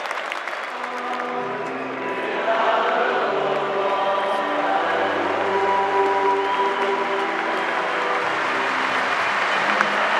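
Slow music of held chords with a deep bass note, over the clapping and noise of a large stadium crowd.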